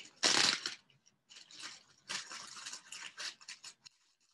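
Clear plastic ziploc bag crinkling as it is opened and handled: a loud crinkle near the start, then softer, irregular crackling.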